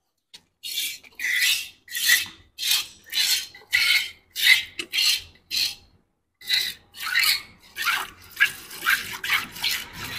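Cow being milked by hand into a metal bucket: squirts of milk hit the pail in a steady rhythm of about one and a half strokes a second, break off briefly past the middle, then come quicker.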